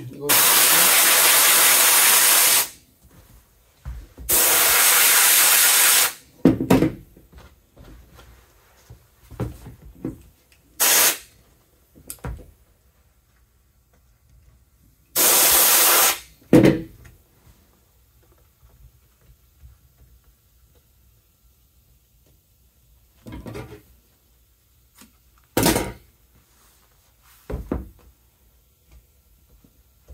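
Compressed-air glue spray gun spraying adhesive in bursts of steady hiss: two of about two seconds each near the start, one of about a second midway, and a few shorter puffs in between.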